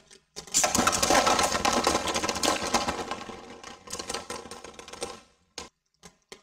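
Dense rattling and clattering of small hard objects that starts suddenly about half a second in, stays loud for a couple of seconds, then thins out and dies away by about five seconds.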